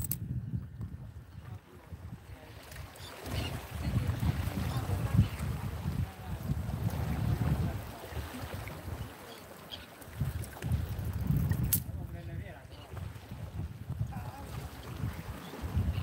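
Wind buffeting the microphone in uneven gusts, a low rumble that swells and drops every second or two, with small waves washing against the jetty rocks.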